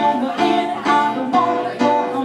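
Schimmel grand piano played live in steady repeated chords, about two a second, with a woman singing over it.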